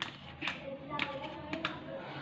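A few light taps and clicks of kitchen utensils, about four in two seconds, over faint background voices.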